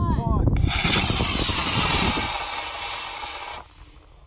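Estes Saturn V model rocket's motor igniting about half a second in and burning with a loud rushing hiss for about three seconds, fading as the rocket climbs away, then cutting off near the end.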